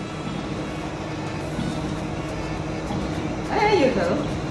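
Chocolate tempering machine running with a steady low hum, with a voice near the end.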